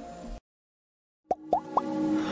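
A faint music bed cuts off, and after a short silence three quick bloop sound effects follow, each a short upward-gliding pitch, a little higher than the one before: the opening of an animated logo sting.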